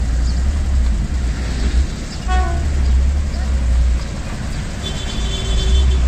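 Steady low rumble of engines at a railway level crossing as a diesel train approaches from a distance, with a brief horn about five seconds in.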